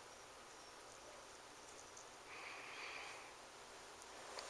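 Near silence: room tone, with a faint soft hiss for about a second near the middle.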